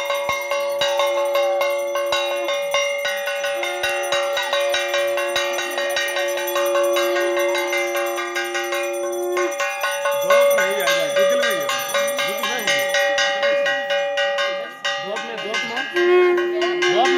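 Puja bells ringing continuously with rapid repeated strikes, several steady ringing tones layered together. From about ten seconds in, voices rising and falling in pitch join the ringing.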